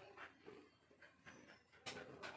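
Near silence: faint background noise, with one short sharp click near the end.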